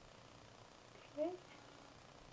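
Near silence: quiet room tone, broken once a little past a second in by a short, soft spoken "okay" with a rising pitch.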